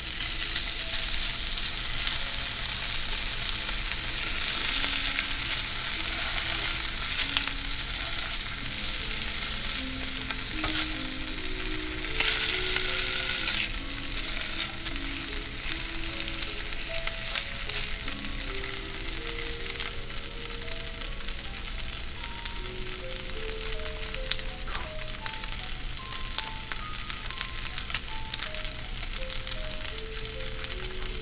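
Thick slices of smoked buckboard bacon (cured pork butt) sizzling in a frying pan with a steady hiss, which flares louder for a second or so about twelve seconds in.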